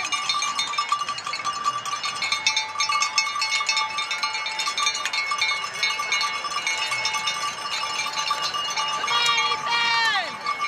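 Cowbells rung steadily by spectators, a continuous jangling clang, with a voice calling out near the end.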